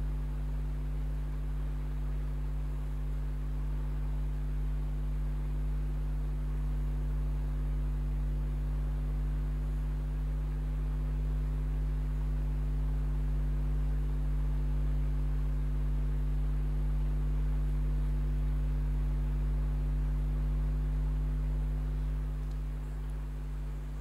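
Steady electrical mains hum: a low 50 Hz drone with its overtones, unchanging throughout.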